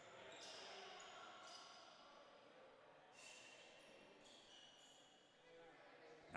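Near silence: faint gymnasium room tone.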